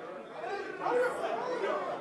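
Faint, indistinct voices murmuring in a large hall, like congregation members giving quiet responses.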